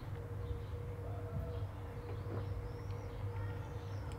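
Quiet garden ambience: a steady low hum with faint, distant bird chirps about halfway through and later on.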